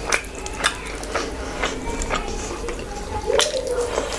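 Wet squelching and smacking of rice and curry gravy being mixed and squeezed by hand on a plate, with a sharp wet click about every half second.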